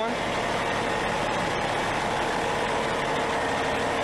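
The coach's 600 hp Cummins ISX15 diesel engine idling steadily.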